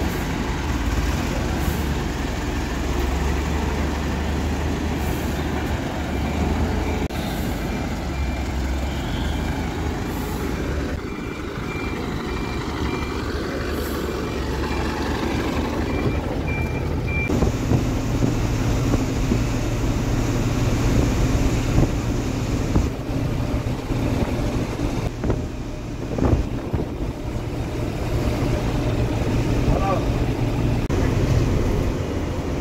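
A FlixBus coach's diesel engine running with a low drone. From about eleven seconds in, a run of short, high warning beeps at one pitch sounds for several seconds. In the second half, the engine is heard from inside the moving coach as a steady hum over road noise.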